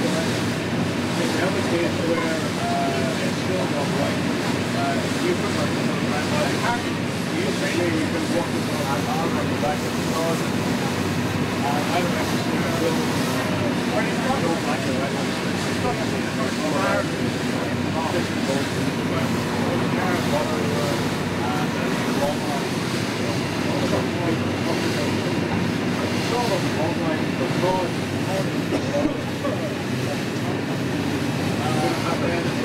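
A fishing boat's inboard engine running steadily while the boat is under way, heard from inside the wheelhouse, with the wash of the sea along the hull.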